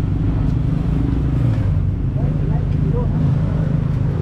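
Steady low hum of road traffic, car engines running on the street alongside.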